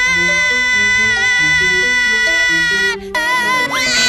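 A cartoon boy's long, high-pitched yell held steady for about three seconds, breaking off briefly, then a second rising yell near the end, over background music.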